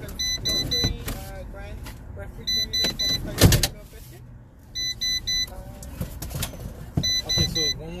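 Electronic beeping in quick runs of about four beeps, repeating every two seconds or so. There is a loud thump about three and a half seconds in and a few lighter knocks, with faint voices now and then.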